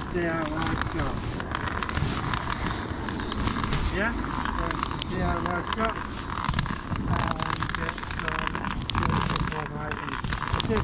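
Indistinct voices talking throughout, with crackling and rustling of something rubbing against the covered microphone.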